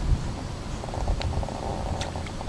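Low rumbling noise of wind buffeting an outdoor microphone, with a faint rapid buzz in the second half.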